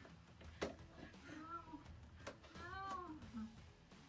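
A toddler's two high, drawn-out squeals, each rising then falling in pitch, with a sharp knock about half a second in.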